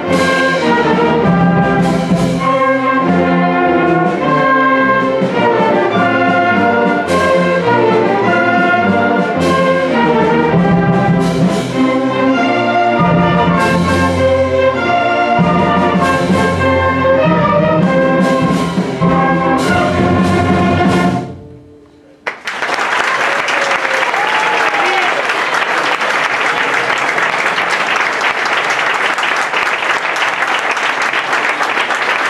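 A student orchestra, bassoons among the winds, plays the last bars of a piece; the music cuts off about 21 seconds in. After a brief pause the audience breaks into steady applause.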